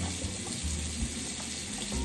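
Tap water running into a bathroom sink, a steady rushing hiss.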